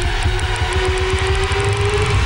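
A rumbling transition sound effect with a slowly rising tone and ticks that come faster and faster.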